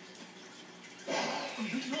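A cartoon character's long breathy sigh, heard from a television's speaker, starting about a second in after a brief lull and running into speech near the end.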